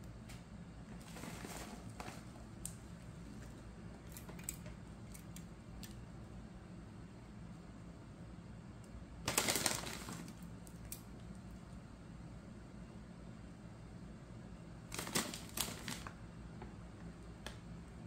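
Plastic candy bag crinkling in short bursts as crushed Butterfinger Bake Bits are shaken out and sprinkled by hand onto a pie, loudest about nine seconds in and again around fifteen seconds. A low steady hum lies underneath.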